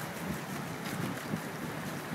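Steady rush of fast-flowing whitewater in a concrete slalom channel, with wind buffeting the microphone in uneven low gusts.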